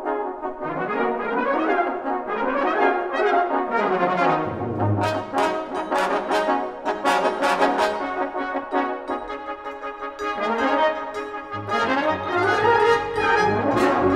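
Full brass band playing live, cornets and horns carrying moving lines. Low bass notes come in about a third of the way through and again near the end, with sharp accented hits in the middle.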